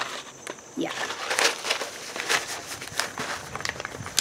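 Paper and seed packets rustling and crinkling as they are handled and sorted through in a box, an irregular run of quick crackles.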